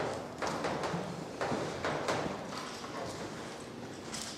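Chalk tapping and scraping on a blackboard as formulas are written: a run of sharp, irregular knocks, about two a second.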